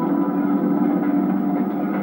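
Film trailer soundtrack from a VHS tape: a dense, loud, low rumbling wash of music or sound effects that comes in abruptly, with no clear melody.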